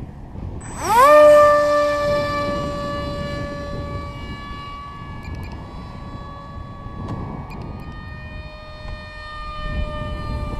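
Electric motor and propeller of a foam RC park jet spooling up sharply about a second in, then holding a steady high whine with many overtones. A low wind rumble runs underneath.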